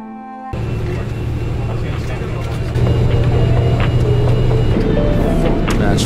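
Road and engine rumble from inside a moving vehicle on a highway: a steady noise with a low hum that starts about half a second in and grows louder partway through. Background music comes in near the end.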